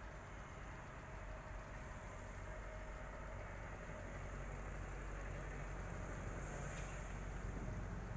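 Steady city traffic at a junction: vehicle engines idling and running, a low steady rumble.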